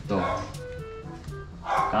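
Music and a voice with a dog barking, a bark just after the start and another, loudest, near the end.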